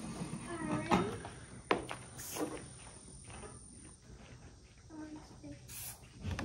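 Two short hissing squirts from a hand spray bottle, about two seconds in and near the end, as the goat's teats are sprayed after milking. A single sharp knock comes just before the first squirt.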